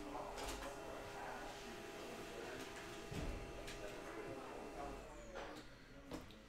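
Faint rustling and a few soft clicks of a trading-card pack's plastic wrapper and the card stack being handled as the cards are pulled out, with one low soft thump about halfway through.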